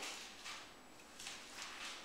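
Faint kitchen handling sounds as pureed black beans are poured from a plastic food processor bowl back into a pot of soup, a few soft scraping noises.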